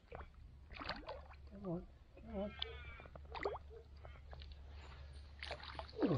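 Faint, brief voice-like calls, the clearest a couple of seconds in, over a low steady rumble.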